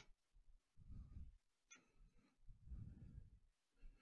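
Near silence with faint handling noise from the rotary attachment being positioned in the laser cutter bed: a light click at the start and another a little under two seconds in, with soft low rumbles between.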